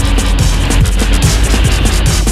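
Loud background music with a fast beat and repeated falling bass notes.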